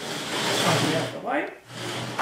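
Heavy steel-based grinding attachment scraping and sliding across a workbench top as it is picked up, a loud scraping noise that dies away after about a second and a half.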